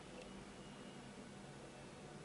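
Near silence: quiet room tone with a faint steady hiss.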